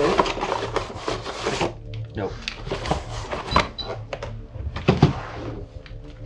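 Cardboard shipping box being handled and opened: rustling and scraping of cardboard for the first couple of seconds, then scattered short clicks and rustles.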